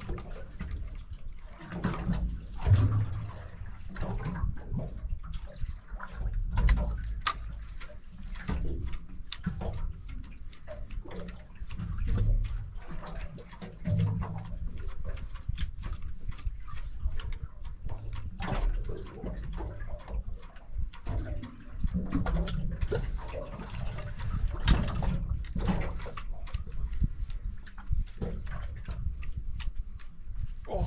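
Sea water slapping and sloshing against the hull of a drifting boat, with an uneven low rumble that swells and fades and scattered small knocks.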